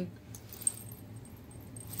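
Faint handling of sterling silver medals: a couple of light metallic clicks in the first second over a low, steady room hum.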